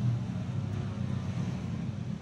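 Street traffic: motor vehicle engines running close by, a low steady hum.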